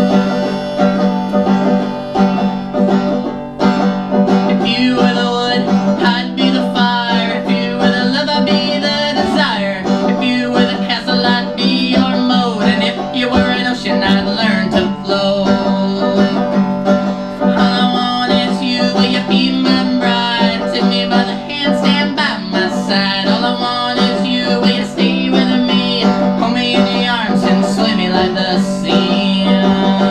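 Banjo played through a PA, picked and strummed in a continuous run of notes.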